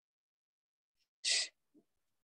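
Dead silence, then a person's single short, sharp breath noise a little over a second in, just before speech resumes.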